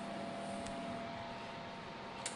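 Steady background hum with an even hiss, and one faint click about two-thirds of a second in.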